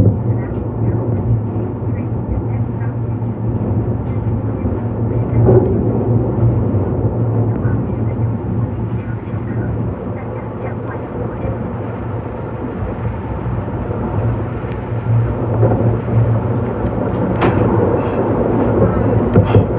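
Running noise of a Meitetsu 6500 series electric train heard from inside the driver's cab: a steady low hum from the motors and wheels on the rails. Near the end an oncoming train passes close alongside with a brief louder rush.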